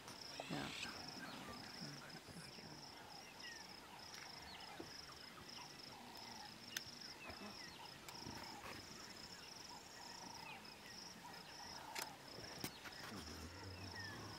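Faint, high insect chirping in a steady run of even pulses, with scattered soft calls and a few light clicks over it.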